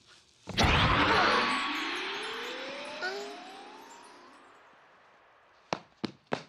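Cartoon-style eruption sound effect: a sudden boom about half a second in, then a hissing rush that fades away over a few seconds while a whistle rises steadily in pitch. A few sharp taps come near the end.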